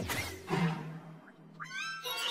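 Cartoon logo soundtrack: music and animated sound effects, with a hit about half a second in and a short high cry near the end that rises in pitch, then holds.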